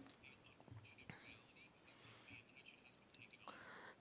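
Near silence, with faint, indistinct speech in the background.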